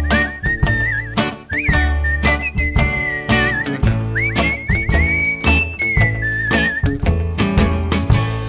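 Whistled melody over a country band: a single clear whistle with quick upward slides into its notes and a warbling trill near the end, which stops about seven seconds in. Underneath it, upright bass and strummed acoustic guitar keep a steady beat.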